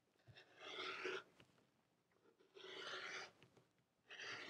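Rotary cutter blade rolling through folded layers of cotton fabric along a quilting ruler, two faint rasping strokes of under a second each, with a third starting at the end.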